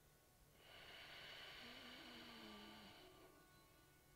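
A faint, long breath from a person holding a one-legged balance pose, lasting about two and a half seconds, with a slight voiced tone under its second half. Otherwise near silence.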